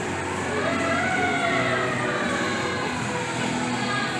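An emergency-vehicle siren wailing: one slow rise in pitch lasting about a second, then a slower fall, over steady background noise.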